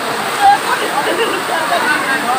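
A small waterfall pouring into a rock pool, a steady rush of water, with several people's voices calling out over it and a brief louder cry about half a second in.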